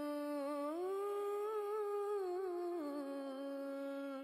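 A single voice humming long, held notes with no accompaniment. The pitch steps up about a second in and settles back down near the end.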